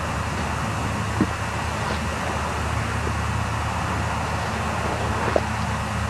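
Steady background noise: a low hum under an even hiss, with two faint clicks, about a second in and near the end.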